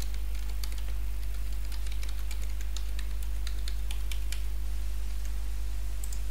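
Typing on a computer keyboard: a run of irregular key clicks as an email address and password are entered, stopping about four and a half seconds in, over a steady low hum.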